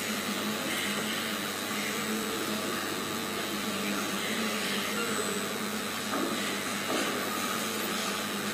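A steady, even hiss of background noise with a low hum underneath, unchanging throughout.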